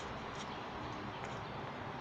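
Steady, fairly quiet outdoor background noise, with two faint short high ticks about half a second and a second and a quarter in.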